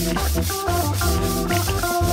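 Broom bristles sweeping across a hard floor, a steady scratchy rubbing, over background music.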